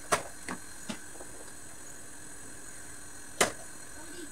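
Wooden spoon knocking against the side of a metal cooking pot while stirring raw meat: three light knocks in the first second, then one sharper, louder knock near the end.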